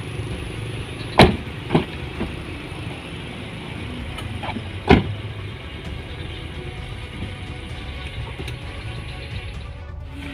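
Doors of a white MPV shut with two sharp slams, about a second in and again about five seconds in, with a smaller knock just after the first. A steady low vehicle rumble runs underneath.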